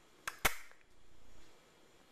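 Two sharp clicks about a fifth of a second apart, the second louder, followed by a faint rustle.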